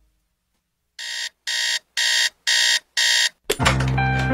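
Five electronic alarm beeps, about two a second, after a second of silence. A hip-hop beat with a heavy bass comes in right after the last beep.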